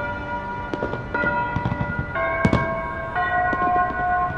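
Clock-tower bells chiming a tune, three struck notes about a second apart, each a different pitch and ringing on. A few sharp cracks sound between the notes, the loudest about halfway through.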